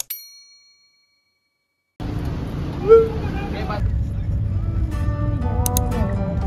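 A mouse click and a bright bell ding from a subscribe-button animation, fading out within a second. From about two seconds in, the steady low rumble of a van cabin on the road, with a brief voice about a second later and music coming in near the end.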